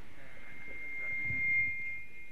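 Public-address feedback: a steady high whistle that starts at once and builds louder over about a second and a half, while a voice carries on faintly underneath.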